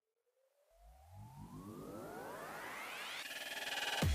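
Synthesized riser sound effect: several tones glide upward together and grow steadily louder over about three seconds, with a low pulsing underneath from about a second in.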